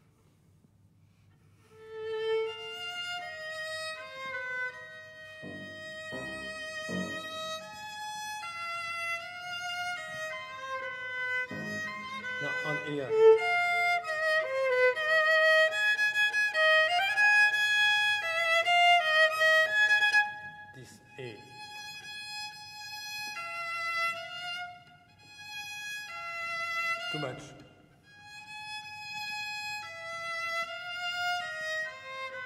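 Two violas playing a slow, singing melodic line of long notes with vibrato, one viola joining the other at times. It starts after about two seconds of near silence and grows quieter and more broken after about twenty seconds.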